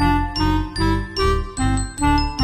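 Background music cutting in suddenly: a melody of short notes over a pulsing bass beat of about two to three pulses a second.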